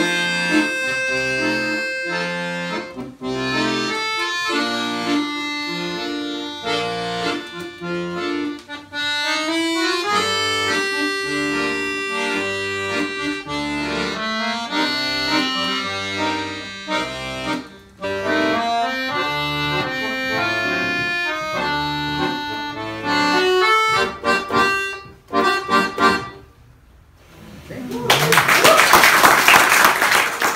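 Two accordions playing a bossa nova duet, a melody over a regular bass pattern; the piece ends a few seconds before the end. After a short pause, applause.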